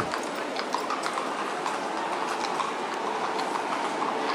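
Horse-drawn carriage passing through a domed stone passage: hooves clopping irregularly over a steady rumble of wheels on the paving.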